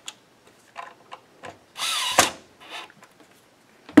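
Cordless drill driver running in one short burst, about halfway through, driving a guitar neck-plate screw into the neck heel to snug it partway. The motor pitch sweeps as the screw seats. A few light clicks come before and after it.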